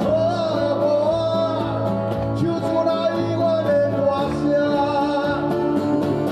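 Live acoustic band music: two acoustic guitars playing with a man singing long, slightly wavering held notes.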